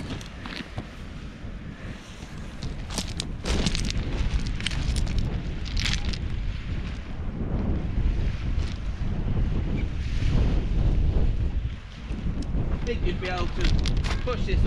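Wind buffeting the microphone in uneven gusts, with a few sharp clicks and rustles of handling a few seconds in.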